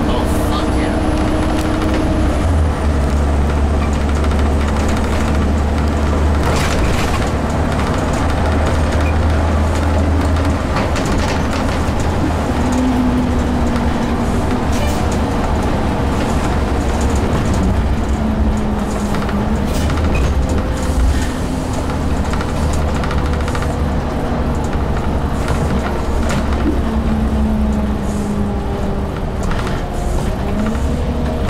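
Gillig transit bus under way, heard from the driver's seat: a steady low engine drone with whining drivetrain tones that step and slide in pitch several times as it accelerates and shifts, and scattered rattles from the bus body.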